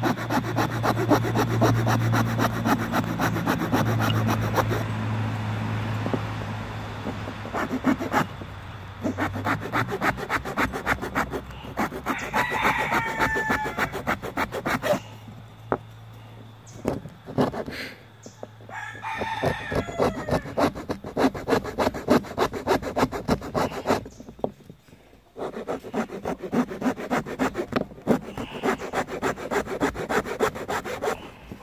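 A bare hacksaw blade, held in the hand, sawing into a small block of wood in quick short strokes, with brief pauses between runs. A rooster crows twice in the background, about twelve seconds in and again near twenty seconds.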